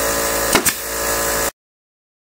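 A staple gun fires once, a sharp snap about half a second in, driving a staple through fleece into the plywood ring, over a steady mechanical hum. The sound cuts off abruptly about a second and a half in.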